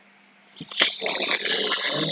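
A person's breathy, unvoiced vocal sound close to the microphone, starting about half a second in after a brief hush.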